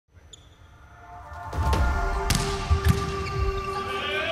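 A volleyball bounced several times on the indoor court floor by a player readying a serve, heard as low thumps over steady background music. The sound fades in over the first second and a half.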